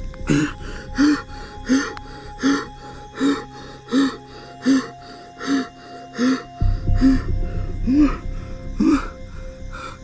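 A person gasping or panting hard in a steady rhythm, a short voiced breath about every three-quarters of a second, over low background music.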